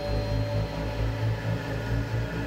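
Low droning suspense background music, with a deep, slowly swelling rumble and faint held tones above it.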